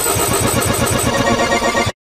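Black MIDI played through a BASSMIDI soundfont synthesizer at high speed: a dense, clashing wall of synthesized notes over a rapid low pulsing. Near the end it cuts out abruptly, the stutter of a MIDI player overloaded far past its CPU limit.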